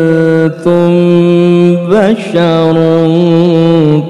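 A male qari reciting the Quran in the melodic tilawah style through a handheld microphone. He holds long, steady notes, with a brief break about half a second in and a quick wavering ornament near the middle.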